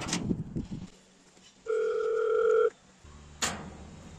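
A click, then a single steady electronic ringing tone about one second long from the Hikvision IP door station's speaker, the call signal sounding when its call button is pressed; a second short click comes near the end.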